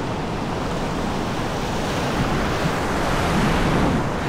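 Ocean surf washing around the shallows at the water's edge, a steady rushing wash that swells a little near the end, with wind buffeting the microphone.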